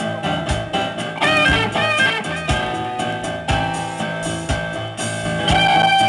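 Blues-rock band playing live without singing: electric guitar and keyboard over a steady drum beat and bass, with held, bending notes.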